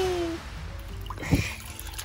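A high-pitched voiced cry trails off in the first half second, followed by water sloshing and a short splash as a toy baby doll is moved in a small pool of water.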